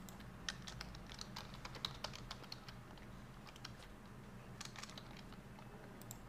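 Faint keystrokes on a computer keyboard: a quick run of typing in the first couple of seconds, then a few more keys near the end.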